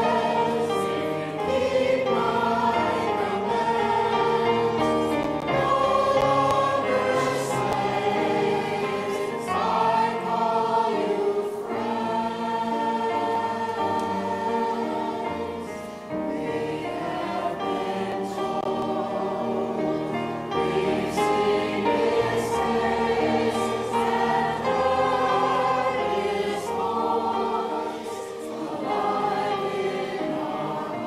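Church choir singing a hymn in long, sustained phrases with brief breaks between them.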